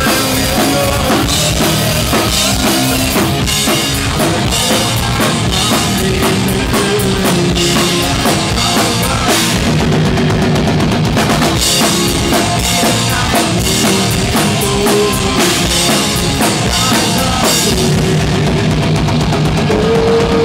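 A live punk rock band playing loud, with a drum kit driving a fast, steady beat of bass drum and cymbals under the rest of the band.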